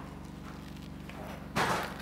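Quiet room tone, then about one and a half seconds in a short crackling rustle from a sheet of Henry Blueskin sticky-backed membrane being handled, peeling where it has stuck to itself.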